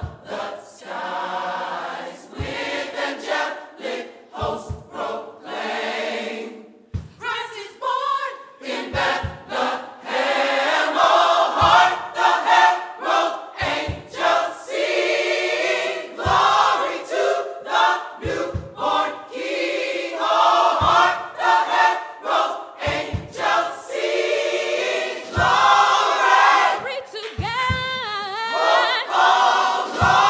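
Large mixed church choir of women's and men's voices singing together, growing louder about ten seconds in.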